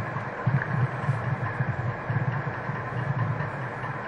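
Steady background noise: a low, unsteady rumble under an even hiss, with no speech.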